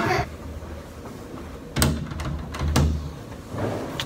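A few sharp knocks about a second and a half to three seconds in, with some low rumble, over a quiet room.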